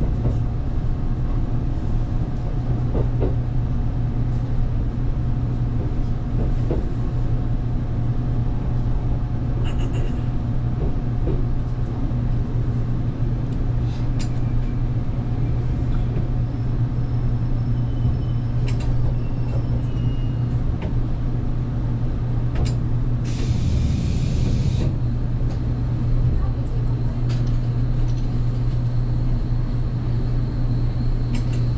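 Inside an electric express train car drawing to a stop and standing at a station platform: a steady low hum of the car's running equipment, with scattered small clicks and a short hiss of released air about 23 seconds in.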